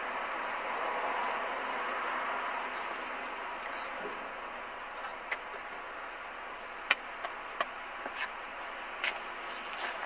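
Steady outdoor background noise that slowly fades, with four sharp clicks in the second half.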